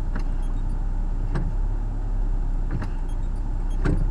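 Car engine idling, heard from inside the cabin as a steady low hum, with a few light clicks about a second apart.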